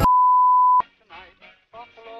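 A single loud electronic beep at one steady pitch, the standard censor-bleep tone, lasting just under a second and cutting off sharply. Quiet music follows.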